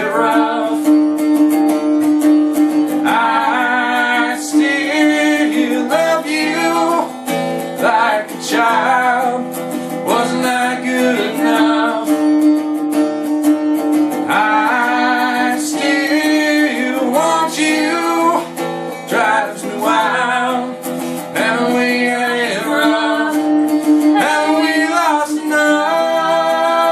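A man and a woman singing a slow song together, accompanied by a plucked long-necked string instrument, in phrases with short pauses between them.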